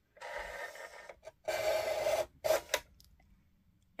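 Tim Holtz Tonic rotary trimmer's cutting head pushed along its rail, the rotary blade slicing through card: a rasping cut noise in three strokes over the first three seconds, the middle one loudest. It is a very satisfying cut noise.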